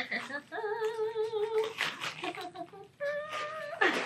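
A woman humming two held, slightly wavering notes, one about half a second in and a higher one about three seconds in, with plastic bubble-wrap packaging crinkling in her hands around them.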